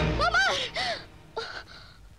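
A woman gasps and cries out in alarm in short, rising and falling voice sounds, then breathes hard more quietly.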